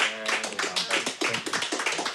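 Small audience applauding, a dense patter of irregular hand claps.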